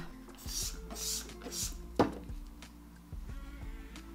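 A trigger spray bottle of glass cleaner sprayed in about three short hisses, followed about two seconds in by a single sharp knock, over soft background music.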